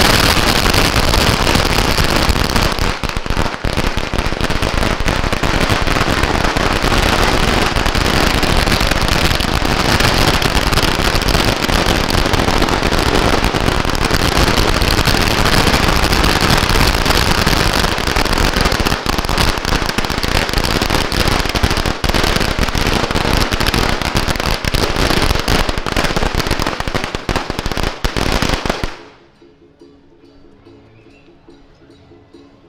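Strings of Chinese firecrackers going off in a loud, continuous, rapid crackle of bangs for almost half a minute, stopping suddenly near the end.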